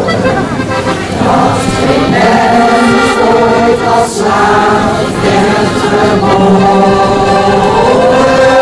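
Mixed amateur choir singing held chords with accordion accompaniment, with short breaks between phrases about a second in and again around four seconds.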